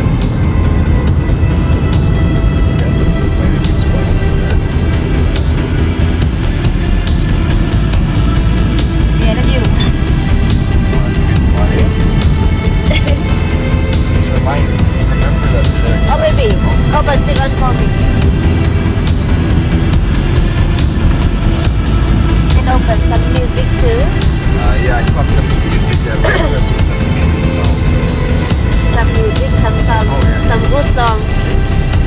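Steady low road and engine rumble inside a moving car's cabin, with music playing over it.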